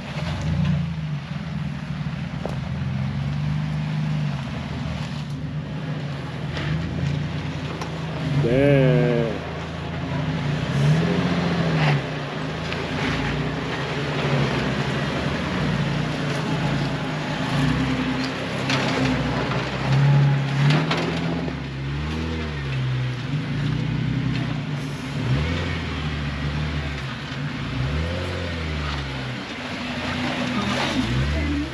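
Off-road 4x4s crawling one after another over a rock ledge, a Ford Bronco, then a Toyota FJ Cruiser, then a Jeep Wrangler, their engines revving up and falling back in short pulls as they climb. A brief wavering cry is heard about nine seconds in.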